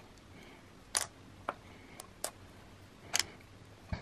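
About five light, sharp clicks and taps from hands handling a muslin straining cloth and its plastic clothes pegs over a glass bowl, otherwise quiet.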